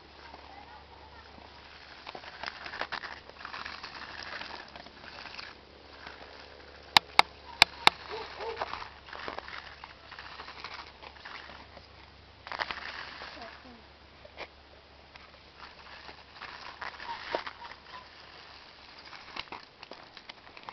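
Micro-T radio-controlled car's small electric motor and tyres on asphalt, coming and going in short spurts as it is driven. There are four sharp, loud clicks in quick succession about seven seconds in.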